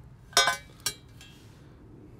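Two metal-on-metal clinks: a loud one about a third of a second in with a brief ring, and a shorter, fainter one about half a second later.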